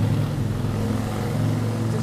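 A steady, loud, low motor hum running without change.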